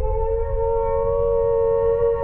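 Air-raid siren wailing, its pitch rising slightly and then holding steady, over a deep low rumble.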